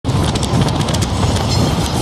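Freight train of autorack cars rolling past, a loud steady rumble with a quick run of sharp wheel clicks in the first second and a half.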